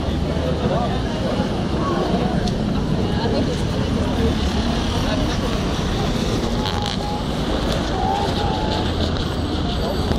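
Busy city street ambience: a steady wash of road traffic with the scattered chatter of passers-by.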